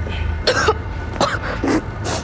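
A boy coughing three times in short, sudden coughs.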